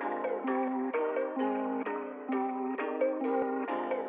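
Hip-hop instrumental intro: a guitar picking a repeating melody, about two notes a second, sounding thin, with no bass or drums under it.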